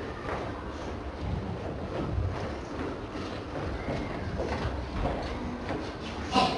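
Low, steady rumbling background noise of a school PE class practising, with faint, indistinct children's voices now and then.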